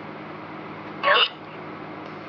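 Necrophonic ghost-box app on a tablet giving a steady white-noise hiss, with one short garbled voice-like fragment from its sound bank blurting out about a second in.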